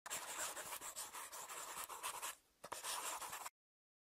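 Scribbling sound effect: a drawing tool scratching rapidly back and forth across a surface as the sketched logo is drawn. It comes in two runs with a brief break a little past halfway, then cuts off suddenly near the end.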